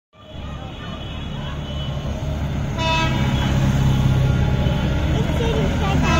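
Engines of an approaching convoy of tractors, a low rumble that grows steadily louder, with a vehicle horn sounding steadily for about two seconds from about three seconds in.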